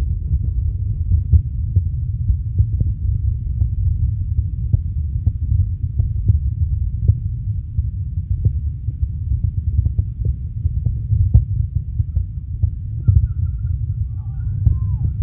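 Steady low rumble of microphone noise on a phone recording made on a pitch, with faint light ticks scattered throughout.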